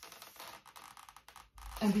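Faint, uneven rubbing and squeaking of twisted latex modelling balloons as the sculpture is turned in the hands, followed by a spoken word near the end.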